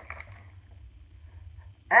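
A lull with only a low, steady room hum, then near the end a woman abruptly breaks into a loud, held sung note, mock karaoke singing.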